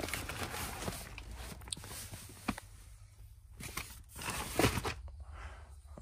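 Rustling of plastic-wrapped fireworks packs and cardboard cases being handled, with scattered light knocks; the loudest knock comes about three-quarters of the way through.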